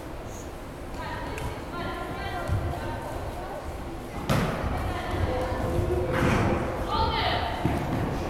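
A futsal ball struck once with a sharp thud about four seconds in, ringing in a large gym hall, amid high-pitched shouting from girls and spectators.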